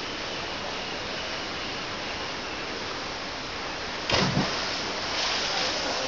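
A diver hitting the water of a pool with a sudden splash about four seconds in, followed by a short hiss of falling spray, over steady outdoor background noise.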